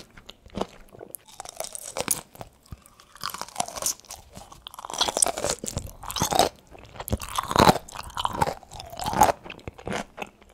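Close-miked chewing of crisp pickled okra pods: irregular crunches that come thicker and louder in the second half.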